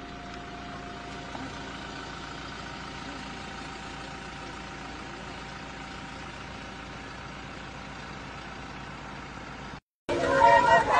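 A motor vehicle's engine running steadily, an even hum with no change in pitch; the sound cuts off abruptly just before the end.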